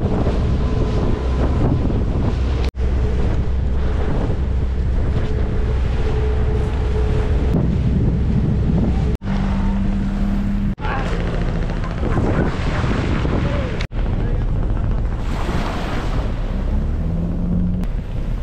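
Wind buffeting the microphone over the steady low drone of an outrigger boat's engine and rushing, splashing water. The sound cuts off and changes abruptly four times.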